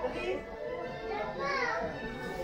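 Background music with a child's high voice calling out twice over other people's voices.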